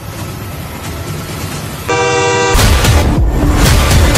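Film-trailer sound design: a low rumble swelling for about two seconds, then a half-second steady, blaring horn-like blast, then a loud booming hit that starts the score.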